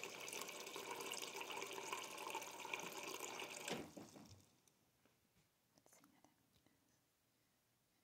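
Water running steadily for about four seconds, then cut off, followed by a few faint ticks.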